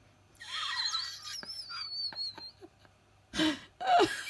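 Budgerigar warbling and chattering in high, wavering notes, starting about half a second in and tailing off after about two seconds, with a few sharp clicks. Near the end, a short burst of a person's voice.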